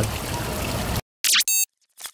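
About a second of fountain water splashing, then a sudden cut to an animated logo sting: a short sweeping whoosh followed by a brief buzzy, glitchy electronic burst.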